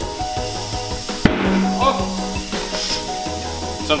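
Compressed air hissing into a tire through a clip-on air chuck during inflation, with one sharp pop about a second in, typical of a tire bead snapping onto the rim. Background music plays throughout.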